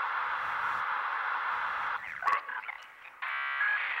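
Broadcast static from a set being switched between channels: an even hiss for about two seconds, then brief faint scraps of sound, then a buzzing tone near the end.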